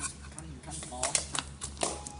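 A quick series of sharp clicks and taps, loudest about halfway through and again near the end, with a soft voice underneath.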